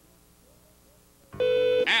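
Near silence for over a second, then a loud, steady electronic buzz from an office phone's intercom that lasts about half a second, paging a call on line one.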